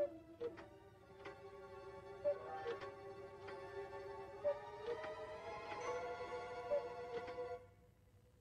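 Soft orchestral film music of held notes, with a repeating two-note tick-tock figure, a higher knock then a lower one, about every two seconds. The music stops shortly before the end.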